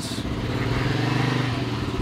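A motorcycle engine running at a steady pitch.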